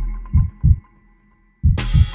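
Background music with a deep, thumping beat that drops out for about a second, then comes back with a bright, noisy burst near the end.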